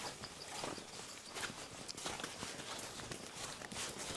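Faint footsteps of people walking on a stony dirt trail, an irregular patter of soft steps.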